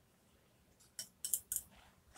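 A quick run of small, sharp clinks and taps starting about a second in, made by a watercolour paintbrush knocking against a hard container as it is lifted away from the painting.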